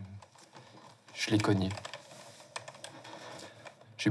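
Typing on a computer keyboard: a scatter of quick key clicks, with a short voice sound about a second in.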